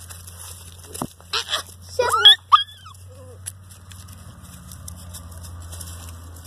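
A small dog yelping in a few short, high cries about two seconds in, just after a knock and rustling as the phone is handled.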